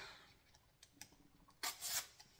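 A package being handled: a couple of faint clicks, then a short rubbing rustle about one and a half seconds in.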